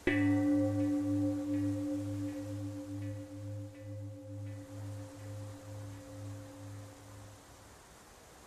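A meditation chime struck once, ringing and slowly dying away over about seven seconds with a slow pulsing wobble in its low tone. It marks the end of a practice round.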